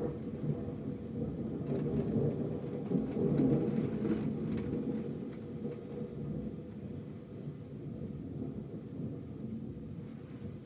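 Rolling thunder from a spring thunderstorm, a low rumble that swells to its loudest about three to four seconds in and then fades away, over steady rain.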